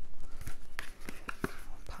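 Paper envelope rustling in the hands, a run of light, irregular crackles as it is turned over and fingered open at the flap.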